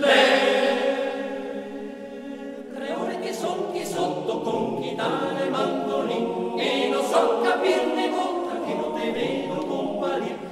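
Male-voice choir singing a cappella in harmony, a Trentino folk song. The voices come in together on a held chord for about three seconds, then move on into the melody.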